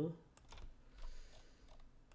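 A few faint, irregular clicks from computer input while working in CAD software.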